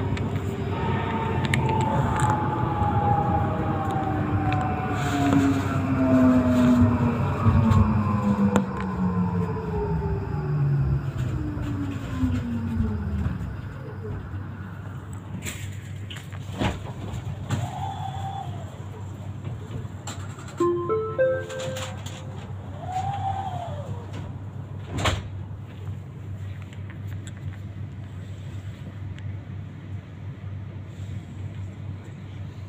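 Tram's electric traction drive whining in several pitches that fall steadily as it brakes to a stop, the whine dying away about halfway through. Then, with the tram standing, a low hum with a few sharp knocks and a short run of rising tones.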